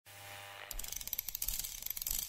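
Faint steady hum, then, from under a second in, a rapid run of ratchet-like mechanical clicks at about ten a second, like a small mechanism being wound.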